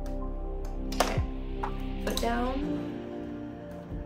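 Soft background music of sustained chords, with a sharp click about a second in and a few lighter clicks from handling at a Singer sewing machine.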